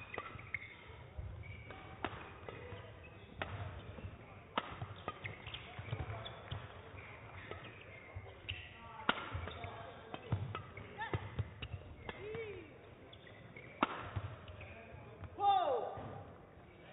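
Badminton rally: sharp cracks of rackets striking the shuttlecock at an irregular pace, about one every one to two seconds, with shoes squeaking on the court floor and a louder burst of squeaks near the end.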